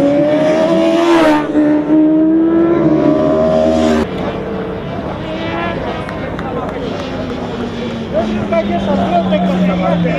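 Racing sportbike engine at high revs, its pitch climbing through the gears with a shift about a second in. After an abrupt cut a little before the middle, a quieter engine note follows, slowly falling in pitch.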